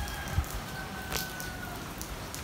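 Steady rain falling on a garden, with a couple of sharper drip ticks and a faint thin high tone that fades out near the end.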